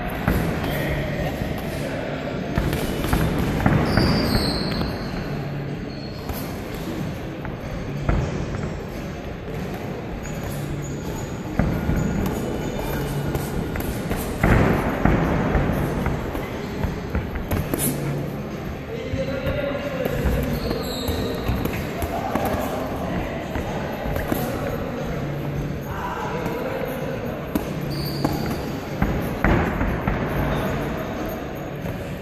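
Boxing sparring: irregular thuds of gloved punches landing on gloves and headguards, with shoes scuffing and stamping on the ring canvas.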